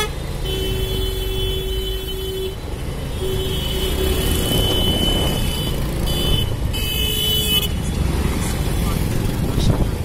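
Vehicle horns honking in traffic over the steady rumble of a moving scooter and wind on the microphone. There is a long horn blast of about two seconds starting half a second in, another from about three to five seconds, and a shorter one around seven seconds.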